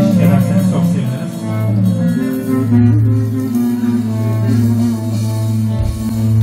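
Live band playing a slow instrumental passage, with a deep bass note held long under the melody.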